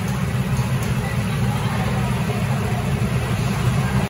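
Several go-kart engines idling together, a steady low rumble, as the karts wait in the pit lane before setting off.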